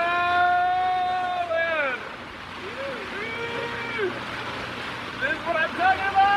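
Men's voices whooping in the rain: one long held shout for about two seconds that drops in pitch as it ends, a shorter held call a second later, then excited voices near the end, over a steady rush of rain and boat noise.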